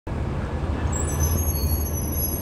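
A Chevrolet-chassis Collins school bus drives slowly, its engine running with a steady low drone. About a second in, a faint high-pitched squeal joins it.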